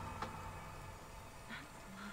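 Faint soundtrack of the playing drama episode: quiet music with a soft click or two at the start.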